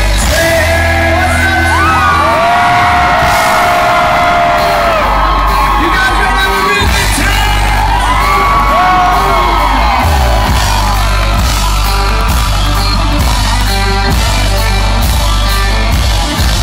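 A live country band playing loud, with singing, fiddle and a heavy bass and drum beat; long held notes slide up into pitch over the band.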